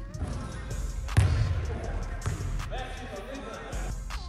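A basketball bouncing on a hardwood gym floor, with one loud thud about a second in and smaller bounces around it.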